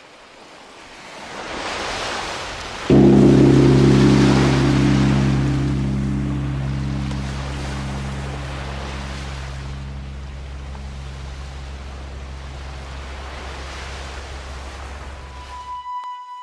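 Cinematic intro sound effect: a wind-like rush swells over the first couple of seconds, then a deep low drone hits suddenly about three seconds in and rings on with a hissing wash, slowly fading until it cuts off at the end.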